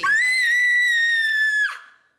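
A woman's long, shrill scream held on one very high pitch for about a second and a half, ending with a quick drop and then cutting off.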